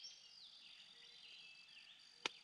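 Near silence: faint rural outdoor ambience, with a steady high insect drone and faint wavering calls, likely birds.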